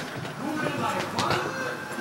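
Indistinct voices with no clear words. One vocal sound rises in pitch about a second in and holds. A sharp click comes at the very start.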